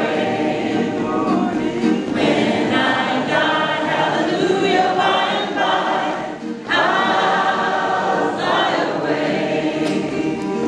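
A small group of singers performing a gospel song in harmony, a woman's lead voice with others singing along, with a brief break about six and a half seconds in.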